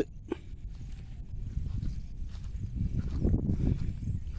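Footsteps of someone walking through grass, with irregular low rumbling and thudding on the phone's microphone that grows louder over the last couple of seconds.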